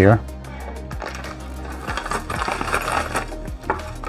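Plastic zip-lock bag crinkling and rustling as hands handle and open it, loudest in the second half, over background music.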